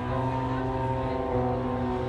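Live black metal band holding a slow, droning chord with no drums, moving to a new chord at the start.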